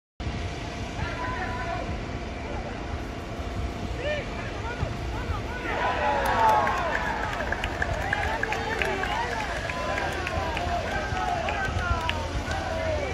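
Footballers' shouts and calls carrying across a stadium with no crowd noise. The shouting swells into a burst about six seconds in as the goal goes in, then carries on more thinly over a steady low rumble.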